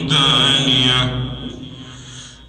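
A man reciting the Quran in melodic chanted style into a microphone, holding a long wavering note that ends about halfway through, followed by a pause for breath.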